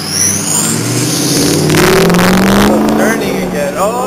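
Loud engine-like revving sound that rises in pitch through the middle, with a voice near the end.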